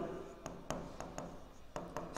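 A stylus writing on an interactive whiteboard screen, heard faintly as about six light, irregular taps and scratches as the strokes are made.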